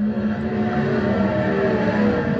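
Sprintcar engine running on the dirt track, heard through a television's speakers, a steady mechanical drone under track noise.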